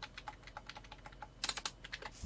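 Computer keyboard typing: a run of light key clicks, with a quicker flurry about one and a half seconds in.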